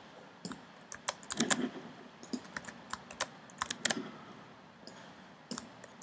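Computer keyboard keystrokes and clicks: scattered, irregular taps as coordinates are selected, copied and pasted.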